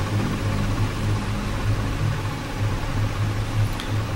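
Steady low mechanical hum under an even hiss, pulsing slightly.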